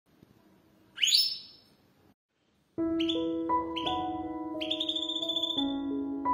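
A single short, loud rising whistle-like sweep about a second in, then a pause, and from near the three-second mark background music of sustained, overlapping keyboard-like notes with bright rising accents.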